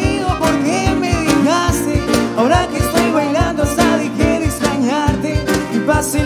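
Live acoustic band music: acoustic guitars playing with a steady low percussive beat and a bending melodic line over them.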